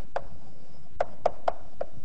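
Chalk tapping and writing on a blackboard: five sharp taps, one near the start and four in quick succession in the second half.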